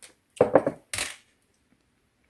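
A drinking glass of milk with a stirring stick in it clinking: a quick cluster of clinks about half a second in, then one sharper knock about a second in as the glass is set down on the countertop.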